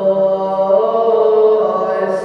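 Byzantine chant: a voice sings long, drawn-out notes that step slowly between pitches.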